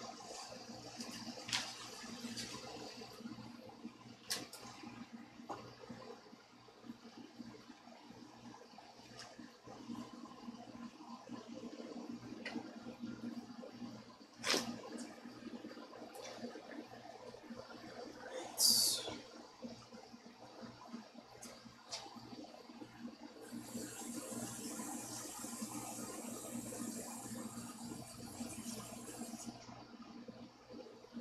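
Faint household noises from out of view: a few scattered knocks, a short high falling squeak about two-thirds of the way in, and a steady high hiss over the last six seconds.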